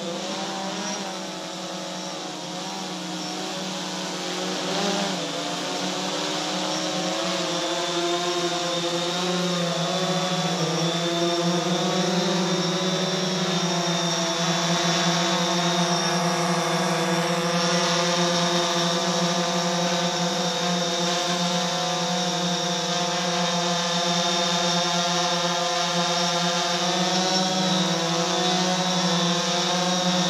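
DJI Phantom 4 quadcopter's propellers buzzing in flight, a hum of several steady pitches. The pitch wavers for the first few seconds as it manoeuvres; the hum grows louder as the drone comes closer, then holds steady.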